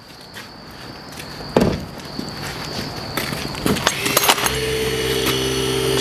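A thud and handling knocks, then about four and a half seconds in a battery-powered hydraulic rescue cutter's motor starts and runs with a steady low tone.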